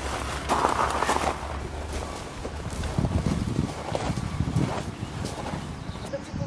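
Pram wheels and footsteps crunching over loose gravel in irregular spells, the wheels sinking into the stones rather than rolling freely.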